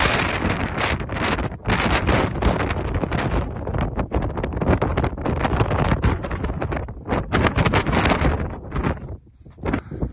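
Wind buffeting the phone's microphone in strong, uneven gusts, easing briefly near the end.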